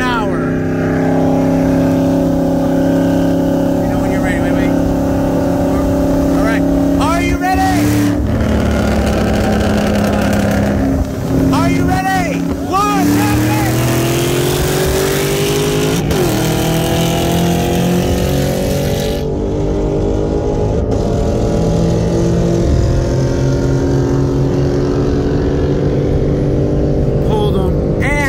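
2022 BMW M3 Competition's twin-turbo straight-six at full throttle, heard from inside the cabin. It pulls hard through the gears, the pitch climbing and falling back at each upshift.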